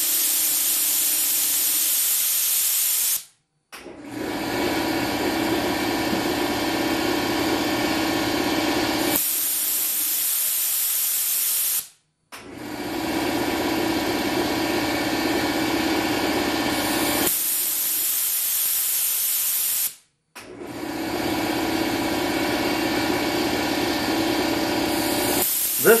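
A brass live-steam safety valve on compressed air pops off at about 120 psi, venting with a loud hiss that lasts about three seconds, then reseats. It does this four times, roughly every eight seconds, cycling at its set pressure. Under it an air compressor runs steadily.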